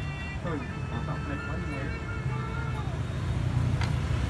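The closing line of a Vietnamese subscribe jingle, a voice singing "những video hấp dẫn" over music. It fades out within the first couple of seconds, over a steady low rumble like road traffic that grows louder near the end.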